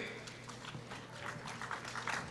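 Faint room noise in a large hall during a pause in speech, with scattered soft clicks and knocks.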